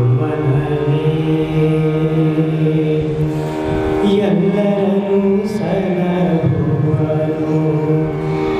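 A man singing a Kannada devotional song into a microphone in Carnatic style, holding long notes that slide and step in pitch. A steady drone accompaniment runs beneath the voice.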